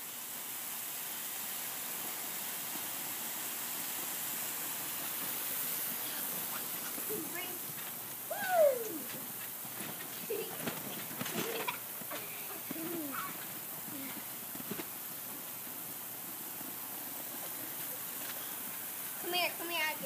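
Lawn sprinkler spraying water onto a trampoline mat, a steady hiss. Children's voices call out now and then over it, the loudest a falling cry about eight and a half seconds in.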